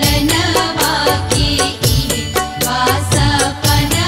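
Bhojpuri Chhath devotional song music: a steady drum beat under bass and a melodic line, with no words sung.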